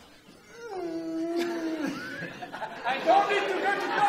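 A voice holding one long drawn-out note that slides down as it begins and drops away about two seconds in, followed by lively vocal sounds without clear words.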